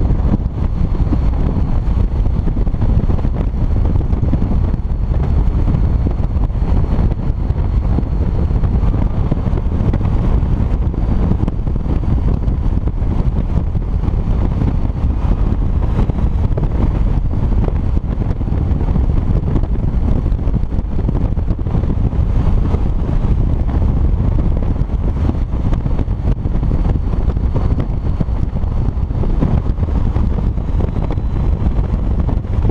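Touring motorcycle cruising at highway speed: a steady rush of wind on the helmet-mounted microphone over the bike's running noise.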